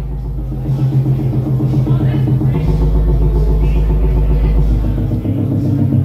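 Live band music from synthesizers and electric guitar over a deep, sustained bass line, with a drum beat. The low bass note shifts about halfway through.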